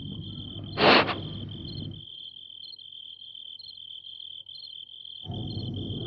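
Crickets chirping: a continuous high trill with regular pulses over it. A short, loud, noisy burst, like a sharp breath or sniff, comes about a second in.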